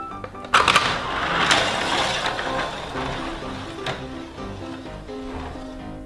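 Small plastic toy vehicle rolling down a plastic spiral track, starting with a clack about half a second in and then rattling on with a few more clicks as it fades. Background music with a melody plays throughout.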